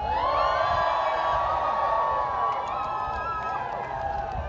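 Concert crowd cheering and whooping at the end of a song, with many voices overlapping and rising and falling together.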